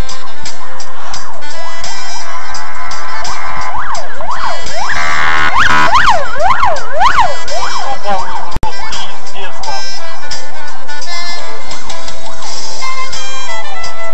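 Loud background music throughout, with a siren rising and falling quickly, about twice a second, for a few seconds in the middle. The sound drops out for an instant shortly after.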